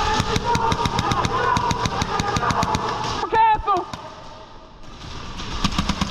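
Airsoft guns firing in rapid fire, a fast run of sharp clicking shots at about ten a second for the first three seconds. A short shout follows, then more shots near the end.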